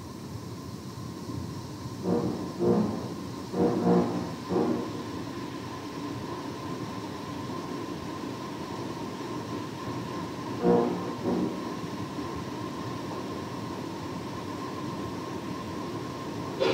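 Steady hiss and a constant hum from an old in-house concert recording. A few short pitched sounds come through it about two to five seconds in and again about eleven seconds in.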